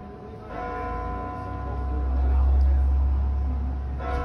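Hallgrímskirkja's church bells ringing: a fresh stroke about half a second in, its tones ringing on. Under them a passing vehicle's deep rumble swells to the loudest point midway and fades near the end.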